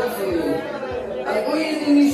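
People talking close to the phone, with chatter from others in the room behind them.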